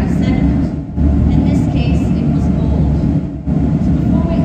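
A woman speaking over a loud, steady low rumble that runs on without a break, even through the pauses in her speech.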